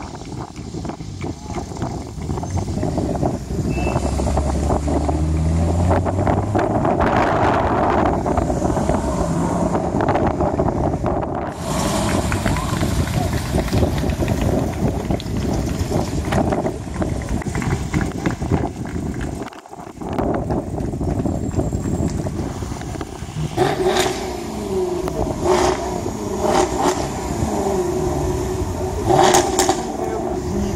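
Car engines running and moving off at low speed, with crowd voices throughout. The sound cuts abruptly twice, about 11 and 20 seconds in.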